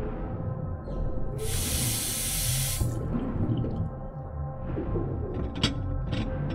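Electroacoustic music: a low rumbling texture with a steady tone held underneath. About a second and a half in, a burst of bright, water-like hiss lasts just over a second, and a sharp click comes near the end.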